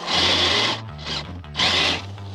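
Redcat RC crawler truck's electric motor whining as its tyres spin in mud, in two short bursts of wheelspin, each under a second. Background music with a steady bass line runs underneath.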